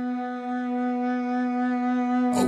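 Instrumental intro of a trap metal track: a single sustained note with rich overtones, held steady and swelling slightly louder, with no beat yet.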